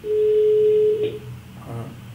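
A telephone ringback tone: one steady beep of about a second on an outgoing call, then it stops while the line keeps ringing.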